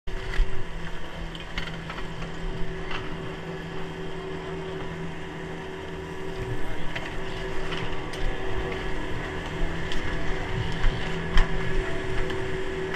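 Station machinery of a 1993 Poma quad chairlift running with a steady hum, with scattered clicks and knocks during boarding.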